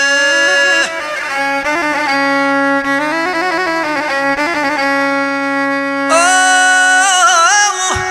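Albanian lahuta, a single-string bowed folk fiddle, playing a wavering, ornamented melody over a steady drone. About six seconds in, a man's voice comes in above it on a long-held note with vibrato, opening a sung epic verse.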